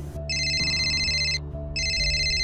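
Mobile phone ringing with a high electronic trill: two rings of about a second each, with a short gap between them.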